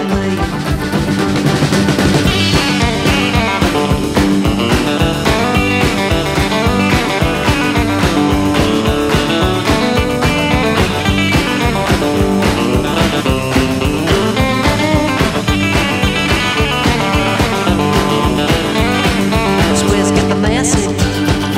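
Instrumental break of a late-1970s rockabilly record: electric guitar playing over a steady driving beat, with no vocals.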